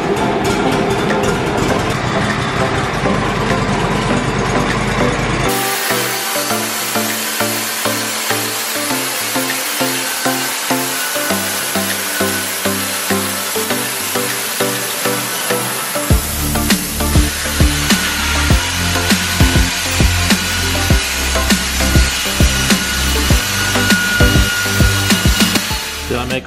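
Kohler Command Pro 25 engine on a Wood-Mizer sawmill running steadily for the first five seconds or so. It is then cut off by background music with a steady rhythm, which carries the rest; a heavy bass beat joins about two-thirds of the way in.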